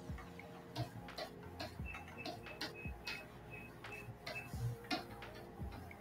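Irregular clicks and light taps from work at a computer desk, over quiet background music with held notes. A short run of high pinging notes plays in the middle.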